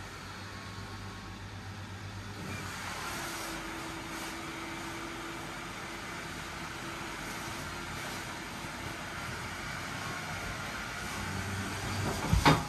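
Battery blower fan of an inflatable costume running, a steady whirr with a rush of air that turns brighter about two and a half seconds in.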